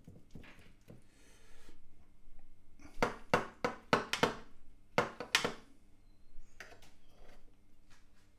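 A chef's knife cuts through a baked moussaka's crunchy topping and knocks and scrapes against the ceramic baking dish. There is a quick run of sharp clicks about three seconds in, and a couple more around five seconds.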